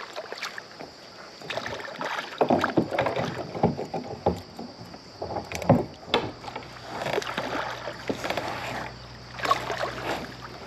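A hooked channel catfish thrashing at the surface beside a kayak, making irregular splashes; the loudest comes a little before six seconds in.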